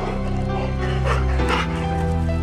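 Background music with a steady chord backing, over which a Labrador barks twice, about a second in and again half a second later.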